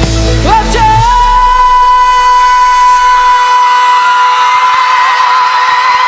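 A female pop singer, recorded live on stage, sings a quick run and then holds one long, steady note from about a second in, with a slight waver near the end. The low band accompaniment drops away under the held note.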